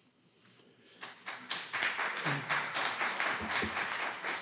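Audience applauding, starting about a second in.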